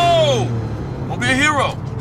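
Voices in a moving car: a drawn-out, rising-and-falling exclamation trails off in the first half-second, and a short exclamation comes about a second and a half in, over a steady low cabin hum.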